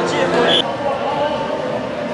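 Voices and chatter in a large indoor arena, with a short, high referee's whistle blast about half a second in. After it the sound settles to a lower, steady hubbub.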